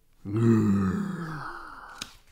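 A man's voice growling "grrr" like a bear, one drawn-out growl that falls in pitch and fades.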